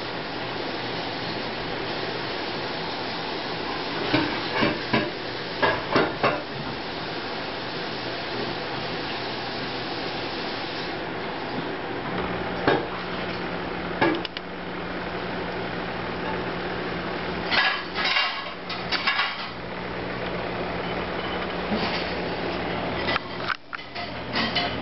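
Sharp clinks and taps of a feeding stick knocking against aquarium glass and rockwork. They come in clusters about four to six seconds in and again around eighteen seconds, with single knocks between, over a steady hiss. A low hum joins about halfway through.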